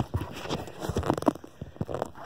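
Irregular clicks, knocks and rustling of handling noise as a folding pocket knife is worked out of a tight shorts pocket, with hands and fabric brushing close to the phone's microphone.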